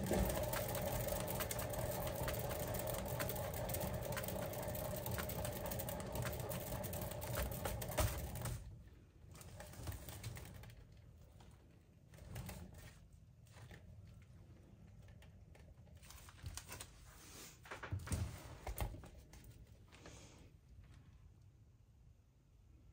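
A painting canvas spun on a turntable: a steady whirring rattle with fast ticking for about eight seconds, which then stops abruptly. After that come only a few soft knocks.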